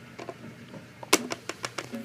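Light plastic clicks and taps from toy playset pieces being handled: a couple of faint taps, then from about a second in a quick run of six or so sharper clicks, the first the loudest.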